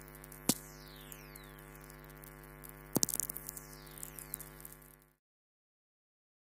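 VLF radio recording of lightning whistlers. A sharp sferic click about half a second in and a burst of crackling clicks about three seconds in are each followed by whistling tones that sweep down in pitch over about a second, over a steady hum. The falling sweep comes from the lightning's radio pulse travelling along Earth's magnetic field lines, with different frequencies arriving at different times. The recording cuts off suddenly near the end.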